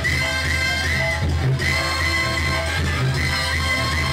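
Mexican banda playing live: a high, swooping melody line repeats in short phrases over a steady, heavy bass and drum beat.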